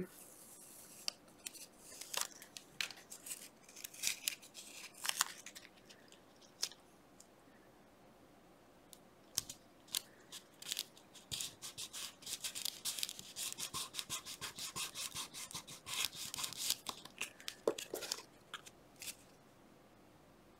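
Playing cards being handled and worked by hand on a cutting mat: scattered light clicks and rustles, then a run of quick rubbing strokes about halfway through that last several seconds.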